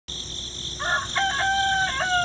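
A rooster crowing: a few short broken notes about a second in, then one long held note. A steady high-pitched whine runs underneath.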